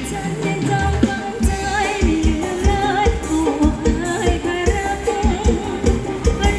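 Live Thai ramwong band music: a singer's voice comes in over the band and a steady, regular drum beat.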